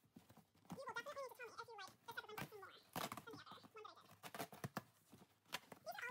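Faint handling of a cardboard box, with light taps and rustles as its flaps are opened. A faint voice murmurs in the background.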